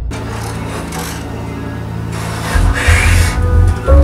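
Dark film-score music: a low sustained drone, with rasping noisy swells about two and a half seconds in and new held notes entering at the very end.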